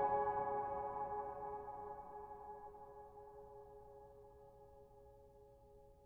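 A piano chord ringing out and slowly dying away, fading steadily almost to silence.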